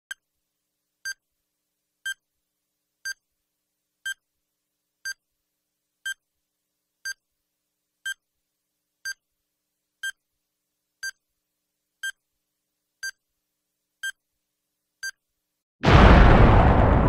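Countdown timer beeping once a second: sixteen short, high electronic beeps ticking off the seconds. Right at the very end a sudden loud crash cuts in.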